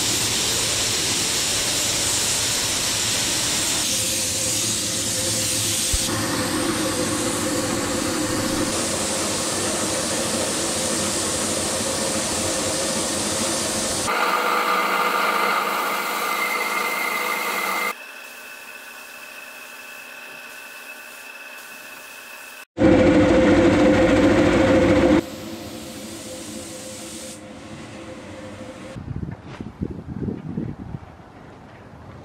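Paint spray gun hissing as base-coat paint is sprayed onto a steel caravan chassis and its brackets. It is heard in several joined clips that change suddenly in level and tone, with a short, louder burst of spraying about three-quarters of the way through.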